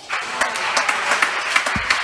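Spectators applauding: a sudden burst of many hands clapping after a point in an indoor padel match.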